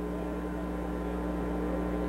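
Steady low electrical hum with no other event, constant throughout.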